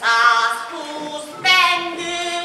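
A woman singing, holding long notes, with a loud new note starting about one and a half seconds in.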